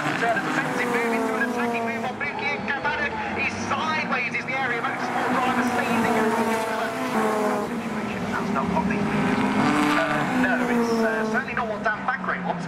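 A pack of Honda Civic race cars passing at racing speed, several engines revving hard at once, their pitch falling and rising as they brake, change gear and pull away.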